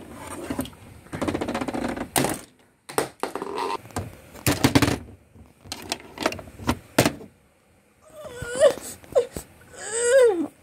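Plastic toy pieces knocking and clattering on a wooden shelf as hands move them about. Near the end a voice gives a few wavering, rising-and-falling whimpering cries.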